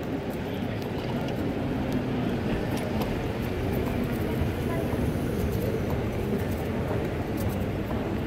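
Steady low rumble and hubbub of a busy airport terminal hall, with faint indistinct voices and a few light clicks.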